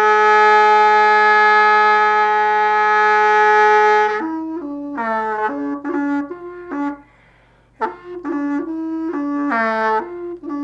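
Background music: a solo wind instrument holds one long note for about four seconds, then plays a slow melody in short phrases, with a brief break about seven seconds in.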